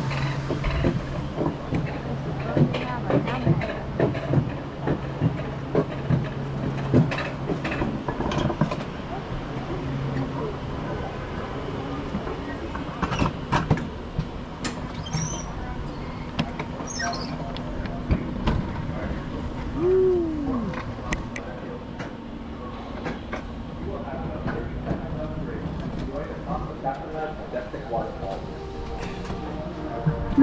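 Alpine coaster sled running along its rail track, a steady rolling hum with frequent clicks and rattles from the wheels and sled.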